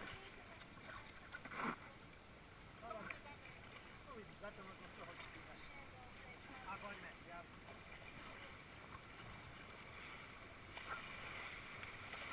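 Water rushing along an inflatable raft with paddle strokes, a brief sharp hit about two seconds in, and faint distant voices. The hiss of rushing water grows louder near the end as the raft runs into whitewater.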